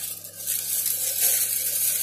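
Plastic shopping bag and packaging rustling and crinkling as groceries are pulled out of it, in an uneven, continuous hiss.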